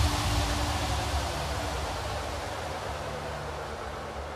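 Breakdown in an uplifting trance track: the beat has dropped out and a hissing white-noise sweep slowly fades away over low held synth tones.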